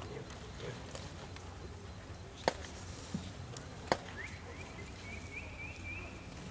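Open arena background of faint distant voices during a cutting run. Two sharp clicks about a second and a half apart stand out in the middle, and a high wavering whistle-like sound runs through the last two seconds.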